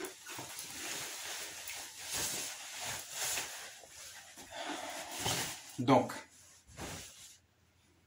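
Fabric rustling as a jacket is taken off and handled, a run of irregular swishes, with a short spoken word near the end.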